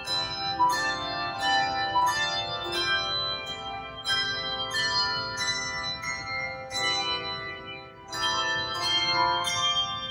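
Handbell choir playing: chords of handbells struck about twice a second, each note left ringing. The bells ease off briefly near eight seconds in, then come in strongly again.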